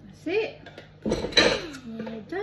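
A spoon clinking and scraping against a metal muffin tin as cake batter is spooned into paper cases. It is loudest and busiest from about a second in, with a child's short vocal sounds over it.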